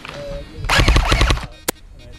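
Airsoft rifle firing a rapid full-auto burst of about three-quarters of a second, close by, followed a moment later by a single sharp click.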